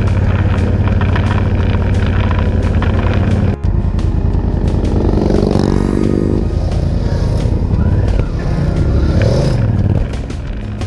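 Motorcycle engines running steadily on the road under background music, with the sound dropping out for a moment about a third of the way in.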